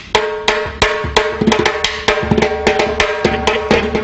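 Uruguayan candombe repique drum played alone in a fast, uneven rhythm of sharp, ringing strokes, about three or four a second.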